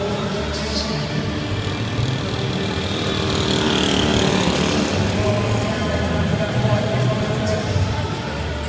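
Music and voices over an arena PA. A pack of track bikes rushes past on the wooden boards around the middle, where the sound swells and then falls away.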